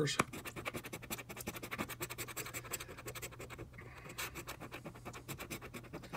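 A paper lottery scratch-off ticket being scratched in rapid, steady back-and-forth strokes that scrape off its latex coating.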